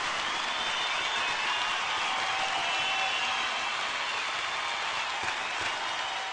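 Concert audience applauding, a steady dense clapping that holds at an even level.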